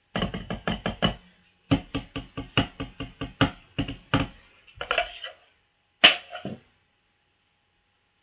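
Wooden drumsticks tapping on rubber practice pads, playing a marching tenor-drum solo in quick, even strokes. There is a short break about a second and a half in, a fast flurry near five seconds, and then the loudest accented hit followed by a few more taps before it stops.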